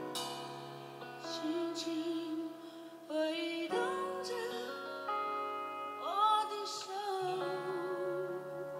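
A woman singing a slow song live into a microphone, holding long notes that waver in pitch, over instrumental accompaniment.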